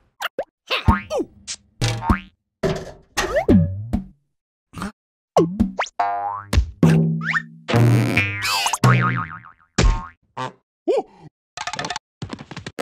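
Cartoon sound effects of a rubber balloon bouncing: a quick series of springy boings and rubbery squeaks that glide up and down in pitch, with brief silences between them.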